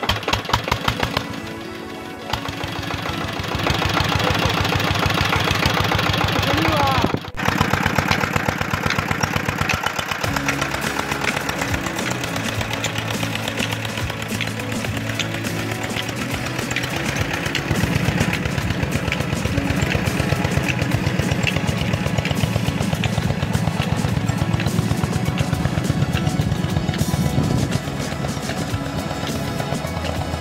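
A single-cylinder Petter-type diesel engine firing up and running with a fast, steady chugging beat as it drives an irrigation water pump, under background music.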